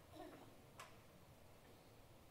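Near silence: room tone, with one faint click a little under a second in.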